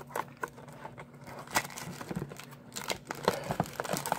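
Cardboard card box being pried and torn open by hand: scattered crinkles and snaps from the flap and its wrapping, the sharpest snap about one and a half seconds in and another cluster near the end.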